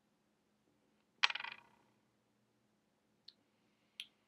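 A short, sudden mouth and breath sound from a man who has just sipped beer from a glass, about a second in and fading within half a second, followed by two faint clicks near the end.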